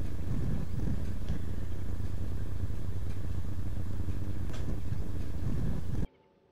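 Steady low outdoor rumble with a few faint clicks, picked up on location; it cuts off suddenly at the very end.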